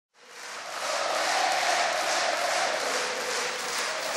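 Concert audience applauding, fading in over the first second and then holding steady.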